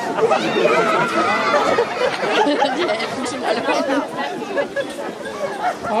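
Several voices chattering over one another, with no single speaker standing out.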